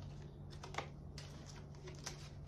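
Faint clicks and taps of tarot cards being handled and laid down on a glass tabletop, over a low steady hum.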